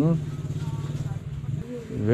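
A brief hummed 'mm-hmm', then an idling engine: a low, steady drone with a fast even pulse for about a second and a half.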